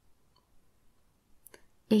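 Near silence in a pause between spoken lines, with one faint short click about one and a half seconds in, just before a woman's voice starts at the very end.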